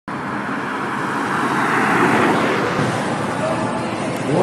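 Steady city street noise: road traffic with indistinct voices mixed in.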